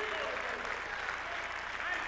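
Congregation applauding steadily, with a few faint voices mixed in.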